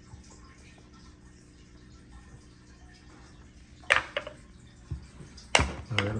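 Small wooden tabletop marble game: after a few quiet seconds, a short run of sharp clicks and knocks as the ball is launched and strikes the wooden blocks and board, the last knock the loudest.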